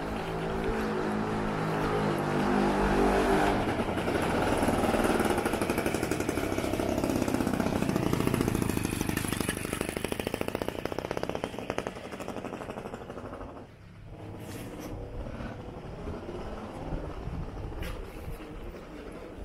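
A motor vehicle engine passing close by: it grows louder over the first few seconds, drops in pitch as it goes past, and fades away about two-thirds of the way through, leaving quieter street sound.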